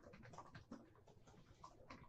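Near silence, with a few faint short scratches of a coloured pencil being flicked across paper.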